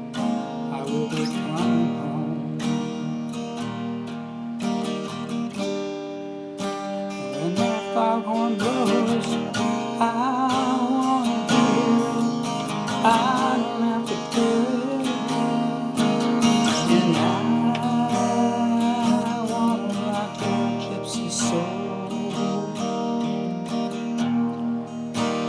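Acoustic guitar in open D tuning, strumming chords and picking out lead lines between them, with some notes gliding in pitch.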